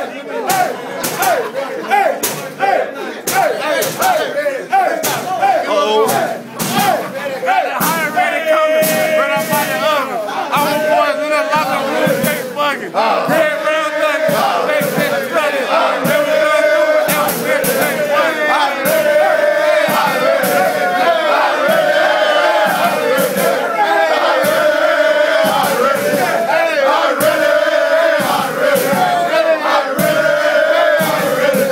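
A crowded locker room of young men shouting and chanting together in a championship celebration, with frequent sharp knocks among the voices. From a little under halfway the shouting settles into a unison chant repeated about every second and a half.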